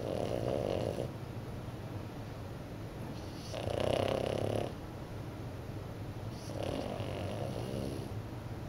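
A sleeping French bulldog puppy snoring: three snores about three seconds apart, the middle one loudest.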